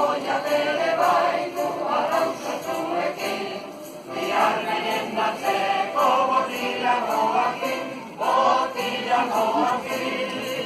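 A mixed choir of men and women singing together, with short breaks between phrases about four and eight seconds in.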